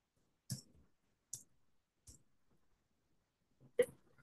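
Computer keyboard keys clicking as text is typed: three short, sharp taps about three-quarters of a second apart, then a man says "okay" near the end.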